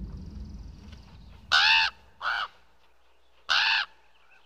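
A crow cawing three times, the middle caw shorter and quieter than the other two.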